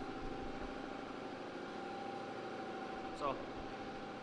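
Steady mechanical hum with a held tone: a shop air compressor and a space heater running together.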